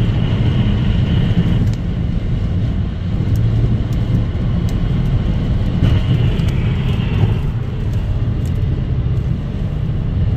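Steady rumble of a car's road and engine noise heard from inside the cabin while driving on a highway.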